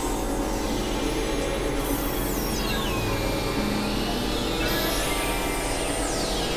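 Experimental synthesizer noise music from Novation Supernova II and Korg microKORG XL synths: a dense hiss over low steady drones. About two seconds in, a high whistling tone slides down in pitch and holds, and another downward sweep begins near the end.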